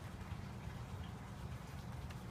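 Low, steady background hum with faint room noise; no distinct event stands out.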